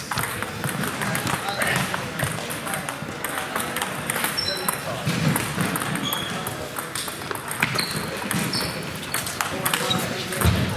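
Table tennis balls clicking and pinging off bats and tables, from several tables in play at once, over a murmur of voices.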